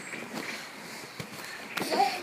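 Handling noise of a tablet being moved about in the hand: faint rustling with a few soft knocks. A child's voice starts near the end.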